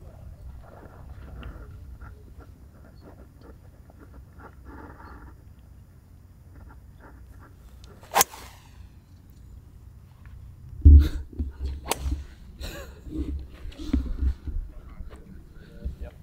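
Fairway wood striking a golf ball off turf: one sharp crack about eight seconds in, with a short ringing tail. From about eleven seconds on, a run of louder low thumps and knocks.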